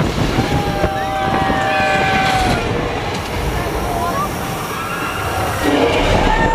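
Tour tram running with a steady low rumble, and several long whining tones over it that rise and fall slightly in pitch.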